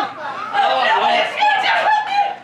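Loud wordless vocalizing from a stage performer, the pitch sliding up and down throughout.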